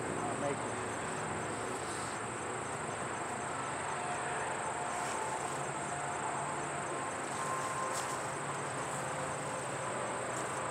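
Crickets singing steadily in one continuous high-pitched trill, over a constant background hiss, with a faint click or two.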